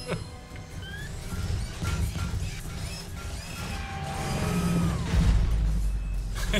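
Film soundtrack: dramatic score mixed with mechanical sound effects, building to a deep, loud rumble about five seconds in.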